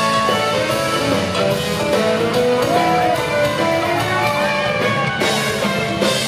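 Live country band playing an instrumental passage with no vocals: strummed acoustic guitar, electric guitar, fiddle and bass, with a lead line of sliding, bending notes on top.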